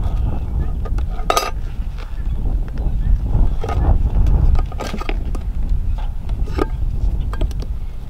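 Metal hive tool scraping and clinking against a tin feeder can as it is pried up out of a wooden bee package, the can stuck where the bees have made it sticky; a few sharp clinks and scrapes, a strong one about a second in. Wind rumbles on the microphone throughout.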